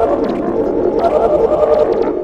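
Heavily processed, distorted logo jingle: several overlapping tones with a rapid flutter, loud throughout.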